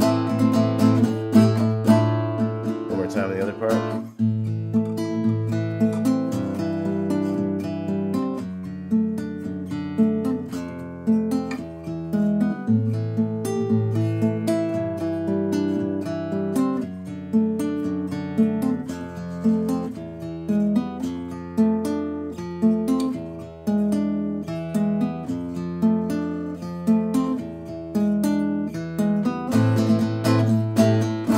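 Acoustic guitar fingerpicked in steady arpeggios through an A minor chord progression, over a bass line that steps downward.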